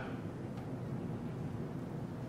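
Steady low background hum and hiss of room noise, with no speech and no distinct events.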